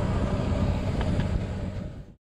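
Yamaha Sniper 155's single-cylinder engine idling steadily in neutral while its check-engine warning is lit, with two faint ticks about a second in.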